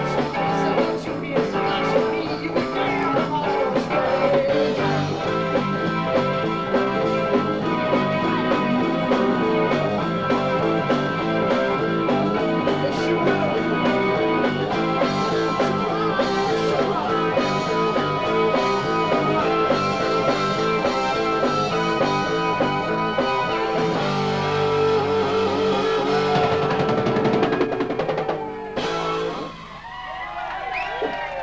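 A live rock band playing: electric guitar and drum kit. A long held chord fills the later part, and the music drops away sharply near the end.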